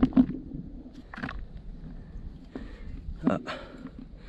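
A few brief rustles and patters of dry, sandy soil crumbled by hand from a soil auger into a plastic bucket, over a low rumble of wind on the microphone, with a short spoken 'Ah' near the end.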